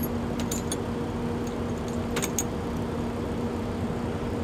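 Steady low rumble and hum of an idling vehicle engine, with a few light metallic clinks: two about half a second in and two about two seconds in, as steel eye bolts are handled against the hitch.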